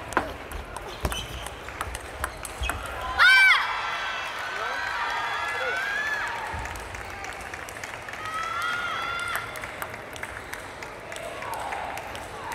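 A table tennis rally, the celluloid ball clicking sharply off rackets and table for about three seconds. It ends with one loud, high-pitched shout, the loudest sound here. After that come further drawn-out shouted calls in young female voices, twice.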